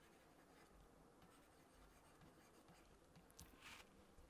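Very faint scratching and tapping of a stylus writing on a pen tablet, near-silent, with one slightly louder brief scratch near the end.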